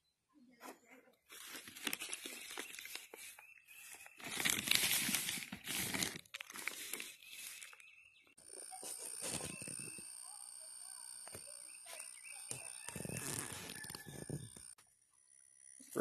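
Potting soil and its plastic potting-mix bag rustling and crunching as a rooted rose cutting is set into a pot and soil is pressed around it by hand, loudest a few seconds in. From about halfway there is a faint steady high tone under the handling.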